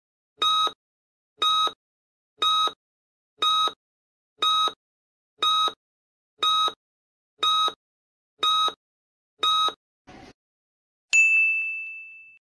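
Countdown-timer sound effect: ten short, identical beeps one a second as the timer counts down. Then a brief faint noise and a bright ding that rings and fades, marking time up and the answer reveal.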